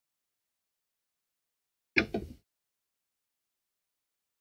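Near-total silence, broken about two seconds in by one brief sound of a man's voice, under half a second long and sharp at its start.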